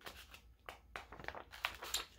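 Paper pages of a picture book being turned by hand: a run of soft, irregular rustles and flicks.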